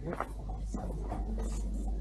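Faint scratching and rustling with scattered small clicks over a steady low rumble.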